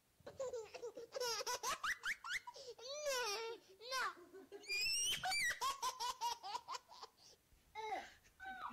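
A baby laughing in bursts, mixed with very high, squeaky voice-like repeats from plush pig toys that record and play back what they hear. The squeakiest part comes about five seconds in.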